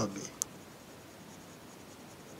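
Colour pencil rubbing on paper in faint strokes as a drawing is coloured in, with one sharp click about half a second in.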